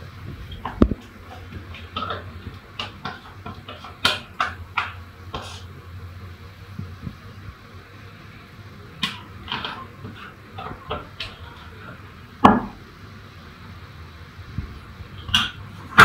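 Metal spoon scraping and tapping the inside of a stainless steel bowl as thick cake batter is poured out, in scattered short clinks and scrapes. There are two louder knocks, about a second in and about three-quarters of the way through, over a faint steady low hum.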